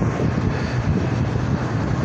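Steady room ventilation noise: a constant low hum under an even rushing hiss.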